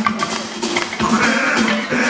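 A live rock band playing: electric bass holding a low note under drum hits, with a wavering high voice-like tone over the top.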